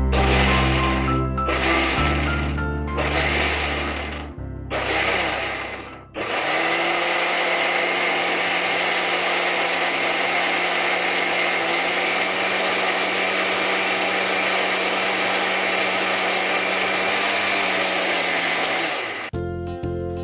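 Electric mixer grinder grinding ingredients to a paste: about four short pulses in the first six seconds, then a steady run with a constant hum that stops shortly before the end.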